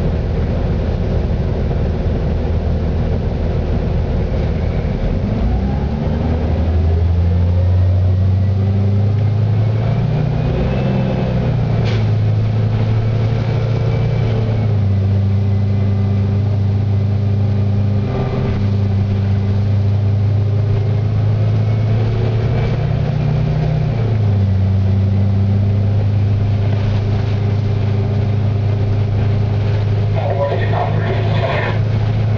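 Cummins B Gas Plus natural-gas engine of a 2007 Eldorado National EZ Rider II transit bus, heard from inside the cabin while the bus drives. The engine note climbs about five seconds in as the bus accelerates, then steps up and down in pitch several times, with a sharp drop about 24 seconds in, as the Allison automatic transmission changes gear.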